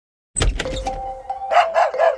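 Short logo jingle: after a moment of silence a thump opens it, two held notes follow, and a dog barks about three times over them in the second half.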